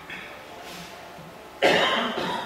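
A person coughs once, loudly and suddenly, near the end.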